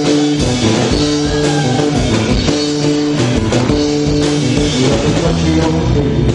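Live rock and roll band playing a song, electric guitar to the fore over drums.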